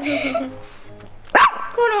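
A small dog barks once, a short sharp yip about a second and a half in, which the owner takes as the dog asking to play too.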